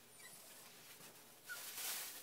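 Chihuahua–miniature pinscher mix whining faintly, a brief high whine about a second and a half in, with a soft breathy sniff or rustle just after.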